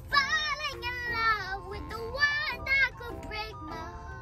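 A young girl singing along in several short phrases over a pop song playing in the car.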